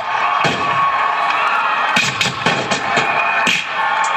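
Dance music playing loudly, with a crowd cheering and shouting over it.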